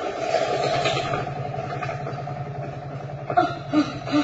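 A vehicle engine running steadily, a low hum with a fast, even pulse.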